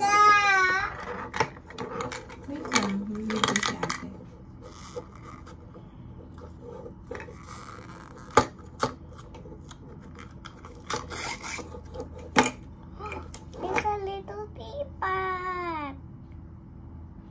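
A young child's high-pitched wordless vocalising, near the start and again near the end. In between come light rustling and a few sharp clicks from a small wrapper and toy being handled at close range.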